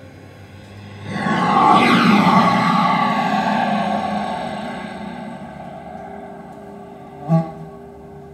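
A loud electronic stage sound effect starts suddenly about a second in, with falling tones, and dies away slowly over several seconds. A short knock comes near the end.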